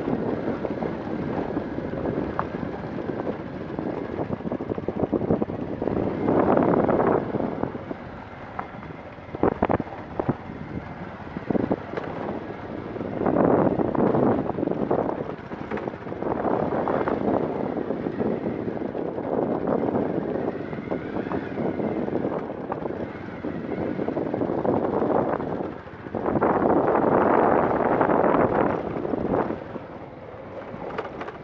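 Wind buffeting the microphone of a phone carried on a moving motorcycle on a rough dirt road, with the bike's engine running underneath. The rushing swells into louder gusts several times, and there are a few sharp knocks.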